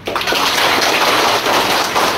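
Audience applauding, starting suddenly and going on steadily.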